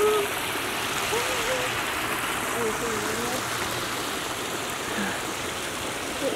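Shallow hot-spring runoff streaming over a rock channel: a steady rush of flowing water.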